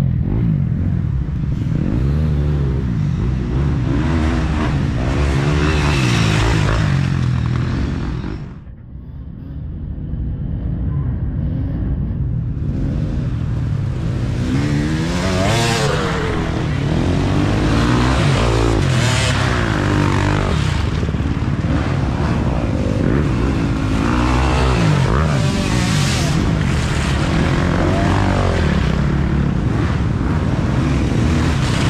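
Dirt bike engines revving and shifting as several riders come down the trail and pass, the engine pitch rising and falling over and over. The sound drops away for a few seconds about nine seconds in, then builds again as more bikes arrive.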